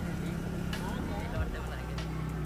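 Motorcycle engine running steadily under way, a low hum whose pitch shifts about a second and a half in.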